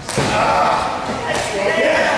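A sharp, heavy thud right at the start, a wrestler's body or strike hitting the wrestling ring, with a low boom trailing after it, then a lighter knock about a second and a half in.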